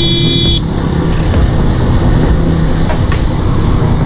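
A motorcycle engine runs steadily under way, with road and wind noise around it. A brief high-pitched beep sounds in the first half second.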